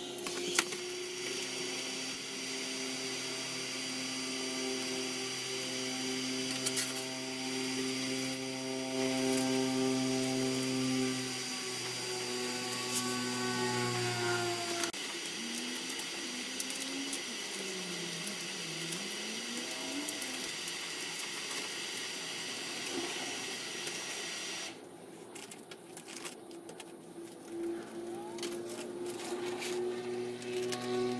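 Handheld electric heat gun blowing steadily while heating vinyl wrap film to soften it for stretching; it is switched off about five seconds before the end.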